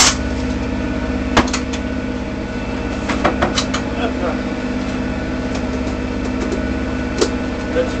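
Sailboat's inboard diesel engine running steadily under way, heard from inside the cabin. A few sharp clicks and knocks at the galley counter, one about a second and a half in and another near the end.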